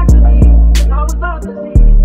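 R&B hip hop instrumental beat at 90 BPM in D minor: deep 808 bass notes with hi-hats and drum hits and a pitched melodic sample on top. The bass cuts out briefly about one and a half seconds in, then comes back.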